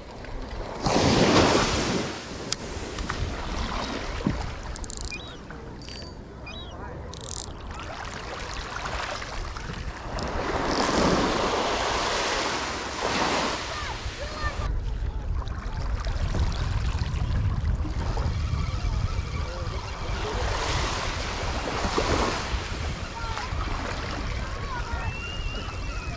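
Small waves washing up onto a sandy beach, swelling and fading three times, with wind buffeting the microphone.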